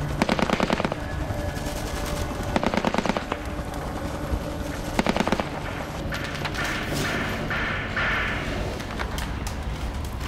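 Bursts of automatic gunfire: a burst of rapid shots lasting about a second at the start, another about two and a half seconds in, and a shorter one about five seconds in, with scattered single shots between them.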